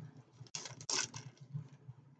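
Faint mouth sounds of a person chewing a gummy organic fruit chew: a few soft smacks and clicks.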